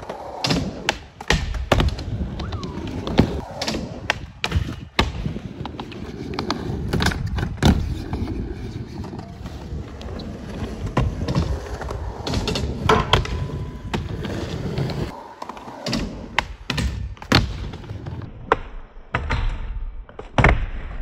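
Skateboard wheels rolling on a skatepark surface, a continuous rumble, with many sharp clacks and thuds from the board popping, hitting the rail and ledge, and landing.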